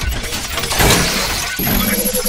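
A TV news channel's logo intro sting: a loud, dense mix of music and sound effects that swells about a second in. Near the end a quick pulsing beat of repeated tones starts, about six pulses a second.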